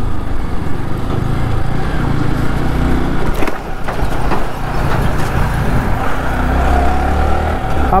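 Ride-along sound on a Yamaha R15 V3 motorcycle: its single-cylinder engine running at low road speed amid steady wind and road noise, as a tipper truck passes close by in the opposite direction.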